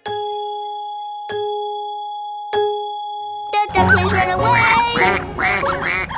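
A clock chime strikes three times, about a second and a quarter apart, each ring fading away: the clock striking three o'clock. Then, from a little past halfway, cartoon ducks quack over bouncy children's music.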